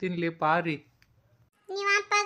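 Speech only: a short spoken phrase, a pause of about a second, then a high-pitched cartoon character voice starting near the end.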